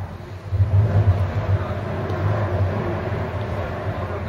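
A loud, fairly steady low rumble with a fainter rushing noise above it.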